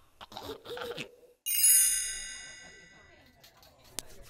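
A bright, high chime rings once about a second and a half in and fades away over about two seconds: a cartoon sound effect.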